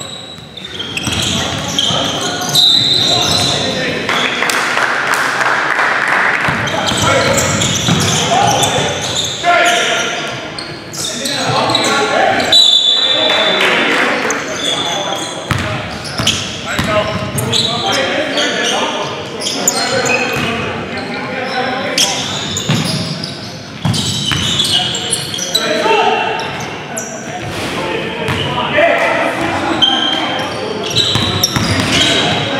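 Basketball being dribbled and bounced on a gym's hardwood floor during a game, with players' voices calling out, all ringing in a large echoing hall.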